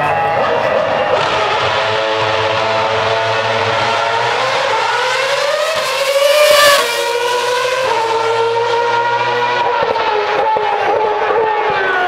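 Formula One car in black-and-gold Lotus Renault livery passing at speed with a high-pitched engine note. The note rises as the car approaches, is loudest about six and a half seconds in, and drops sharply in pitch as it goes by. It then holds a lower note that sinks slowly as the car moves away.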